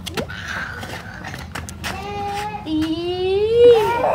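A toddler's long, drawn-out vocal sound, starting about halfway through: held on one pitch, then sliding upward for about a second before it stops.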